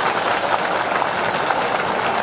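A large crowd applauding, many hands clapping together in a steady, even spread of claps.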